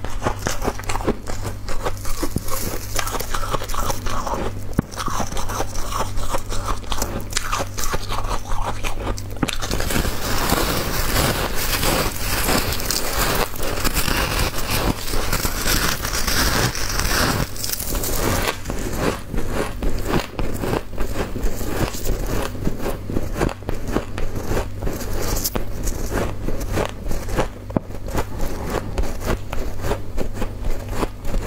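Close-miked biting and chewing of soft, snow-like white ice: a dense run of crisp crunches and crackles, louder and denser for several seconds in the middle.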